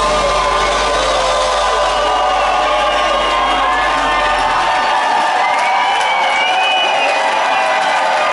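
Rock concert crowd cheering and whooping as a song ends. A low held note rings under the cheering and dies away about halfway through.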